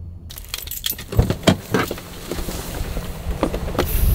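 Rapid light clicks, rattles and rustling, handling noise close to the microphone, starting suddenly just after the start over a steady outdoor hiss.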